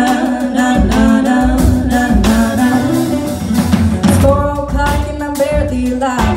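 A small live band playing a soul-pop song: double bass, electric guitar and drum kit, with a woman's voice singing.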